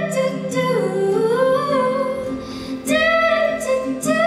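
A woman singing long held notes of a slow song, her pitch sliding down and back up in the middle before a new note starts near the end, with soft musical backing.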